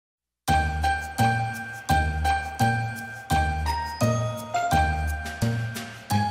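Festive intro music with bright bell-like chimes over a steady bass beat, starting about half a second in.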